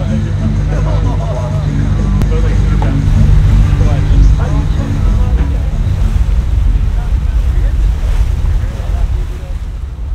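Wind buffeting the microphone over a steady low rumble from a moving boat and the wash of sea water. Voices and laughter are mixed in during the first few seconds.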